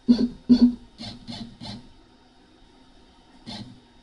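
X-Carve CNC router's stepper motors jogging the gantry in short bursts: two brief buzzes at the start, three shorter ones around a second in, and one more near the end.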